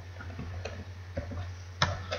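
Computer keyboard keys pressed a few times, short soft clicks with the loudest one near the end, over a steady low hum.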